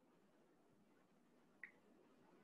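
Near silence, with one faint short click about one and a half seconds in.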